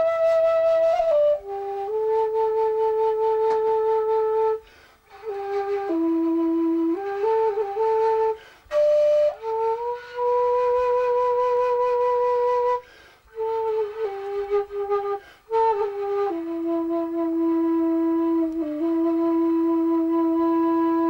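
Xiao, a Chinese end-blown bamboo flute, played in slow phrases of long, steady low notes, with short breaks for breath between the phrases.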